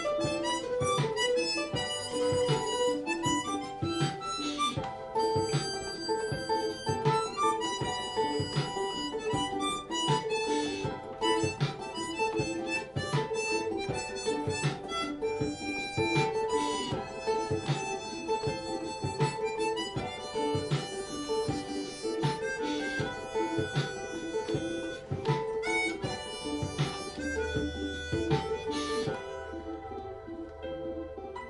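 Harmonica played into a hand-held microphone over an acoustic guitar keeping a steady strummed rhythm, an instrumental passage of a live song.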